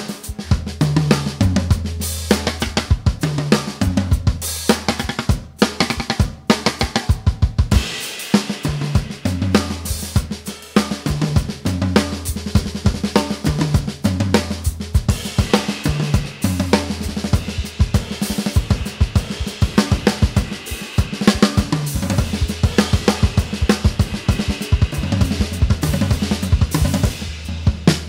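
Gretsch Catalina Club drum kit with mahogany shells, tuned to a medium pitch range, played continuously: a busy pattern of bass drum, snare and tom strokes under ride and crash cymbals.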